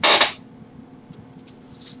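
A short rustling burst right at the start, about a third of a second long, as a person shifts and turns in a seat. Then quiet room tone with a faint steady hum.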